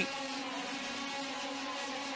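Senior X30 racing karts' 125cc two-stroke engines running at high revs, a steady, even drone that holds one pitch.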